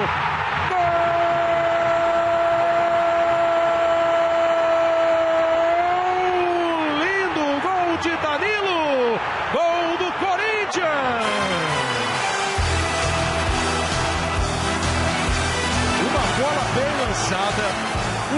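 A Brazilian TV football commentator's goal cry: one long held note for about five seconds, then more excited shouting. From about twelve seconds in, music with a beat comes in.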